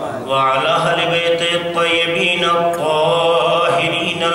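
A man chanting a religious recitation in long, held melodic notes, with brief breaks between phrases.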